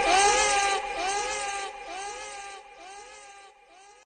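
A high voice's wailing call repeating as an echo, about every half second, each repeat quieter until it fades away.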